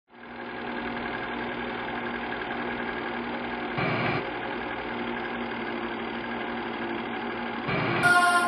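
Film projector running as a sound effect: a steady mechanical whirr that fades in at the start, with two short louder swells, one about halfway through and one just before the end.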